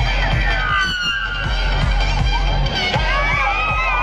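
A large outdoor crowd shouting and cheering, many voices at once, over music with a steady bass beat from a loudspeaker sound system.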